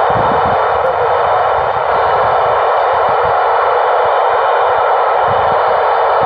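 Steady, loud hiss of static from an Icom ID-4100A 2m/70cm transceiver's speaker, the receiver open with no signal on the satellite downlink.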